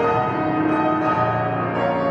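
Grand piano playing held, ringing chords, with a low bass note coming in about a second in.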